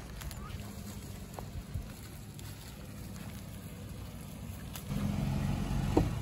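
Pickup truck engine running at low speed, a steady low hum that grows louder near the end as the truck comes close.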